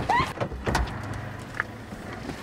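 A short call, then the inside of a car: a low steady hum with a few soft knocks as people get in.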